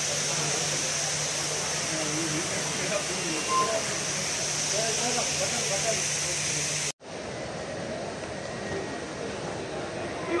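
Steady hiss and low hum of an airport terminal's indoor ambience, with faint distant voices. About seven seconds in, the sound cuts off for an instant and comes back duller and a little quieter.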